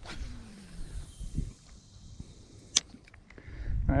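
A spinning-rod cast: a swish at the start, then fishing line hissing off the reel for about two seconds, and a single sharp click near the end.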